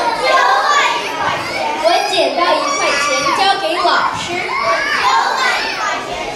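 Several children's voices talking over one another in lively chatter.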